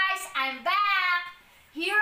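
A woman's high-pitched, sing-song voice in drawn-out, gliding exclamations, with a short pause a little past the middle.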